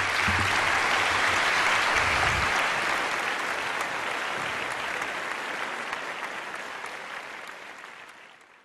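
Audience applauding, the clapping slowly fading away over the last few seconds.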